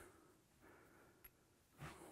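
Near silence: room tone, with a faint short breath near the end.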